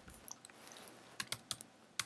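Faint clicks of computer keys being typed: a single tap early on, then a quick run of about four keystrokes in the second half.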